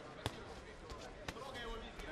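Two sharp knocks about a second apart in a boxing ring, over faint voices.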